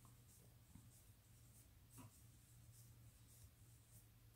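Near silence: faint rustles and light ticks of yarn drawn over a crochet hook as double crochet stitches are worked, over a low steady hum.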